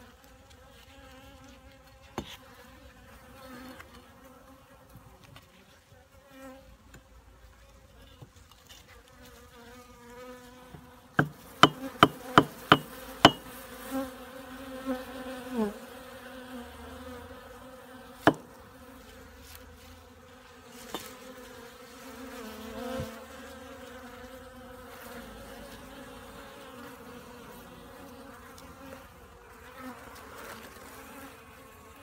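Honeybees buzzing close at the hive entrance, a steady hum. About eleven seconds in comes a quick run of about six sharp clicks, the loudest sounds here, with a few single clicks scattered through the rest.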